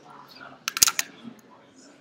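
Low murmur of students talking among themselves in a classroom, with a quick run of sharp clicks lasting about a third of a second a little under a second in.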